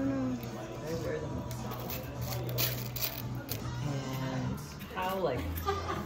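Small metal charms clicking against each other and a plastic cup as they are picked through, a run of light clicks in the middle, under quiet voices and a steady low hum.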